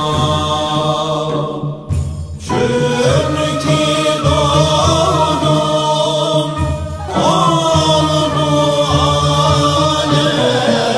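Male voices chanting a Turkish Islamic naat in makam Hüzzam: long, ornamented melodic phrases sung over a low held drone. Each phrase ends and a new one begins with a rising glide, about two and a half seconds in and again about seven seconds in.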